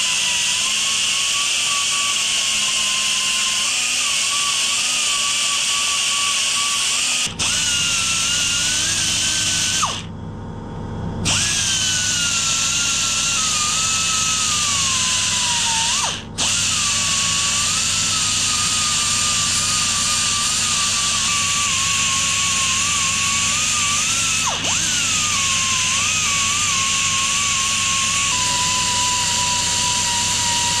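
Narrow belt file sander running and grinding down a raised casting step on a Royal Enfield engine's aluminium casing. Its whine wavers and sags in pitch as it is pressed into the metal, and it briefly drops away about ten seconds in.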